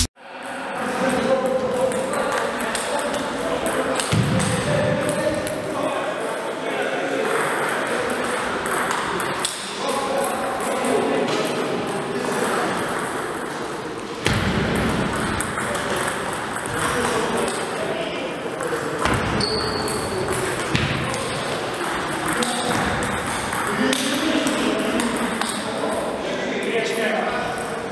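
Table tennis rallies: the celluloid ball clicking off rackets and the table in quick runs of hits, with people talking in the background.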